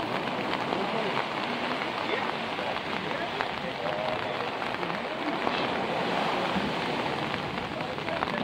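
Steady wash of small waves breaking on a sandy beach, with falling rain.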